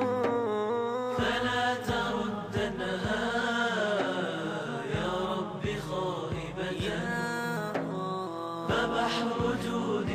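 Arabic nasheed interlude: a chorus carries the melody without words over regular low beats, in the dull sound of a cassette transfer.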